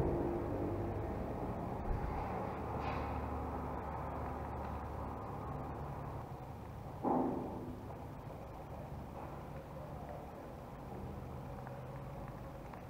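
Faint handling noise as fingers twist the stripped wire ends into a plastic plug insert, over a steady low background hum, with a few small clicks and one brief louder sound about seven seconds in.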